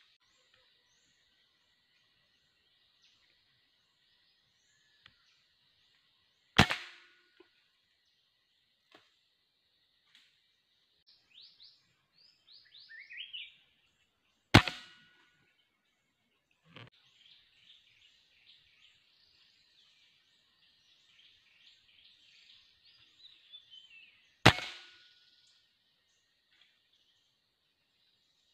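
Three sharp rifle shots fired at birds through a scope, about 6, 14 and 24 seconds in, each a short crack with a brief tail. Birds chirp in quick falling notes between the shots, over a steady faint high drone.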